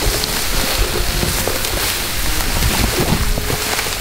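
Loud rushing, crackling noise of dry grass rustling close against the microphone in the wind. It stops abruptly at the end.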